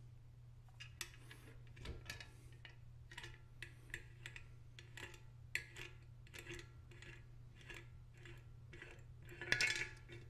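Small metal clicks and clinks of brass pipe fittings being unscrewed and handled by hand on the steel lid of a paint pressure tank, with a louder, longer scraping rattle near the end. A steady low hum runs underneath.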